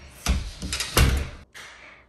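A house's front door being swung and shut, with two thuds about three quarters of a second apart, the second the louder.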